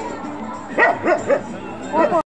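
A Hindi film song playing as background music, with a puppy giving a few short, high yips in the second half.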